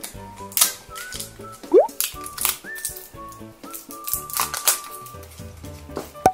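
Light background music with a held-note melody, over several sharp clicks and knocks of masking tape rolls being picked up and set down on the table.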